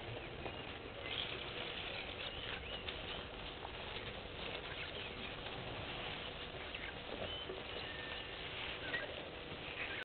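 Bush ambience at a waterhole: a steady faint hiss with scattered short bird chirps and soft patter and clicks.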